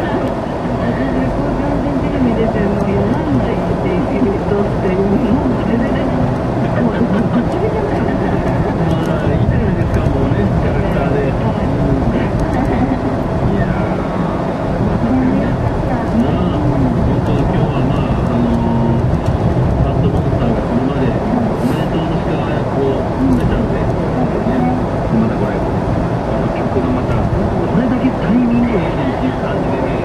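Steady road and engine noise inside a moving car, with voices talking over it.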